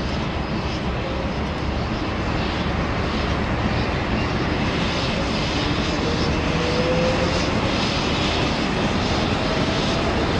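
Locomotives hauling a passenger train, a steam tank engine working hard, making a steady, heavy roar. A faint tone rises slowly through the second half.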